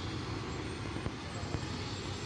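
Tractor-trailer truck driving slowly past: a steady, low diesel engine sound mixed with tyre and road noise.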